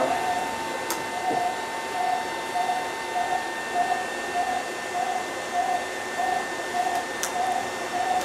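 Oar-shaft wind-resistance test rig: an electric motor turning a long oar shaft on a turntable at a slow 30 RPM. It gives a steady faint hum with a soft pulse repeating almost twice a second, and a couple of light clicks.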